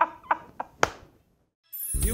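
A man laughing heartily in quick, rhythmic bursts that die away about a second in. After a brief silence, theme music starts near the end.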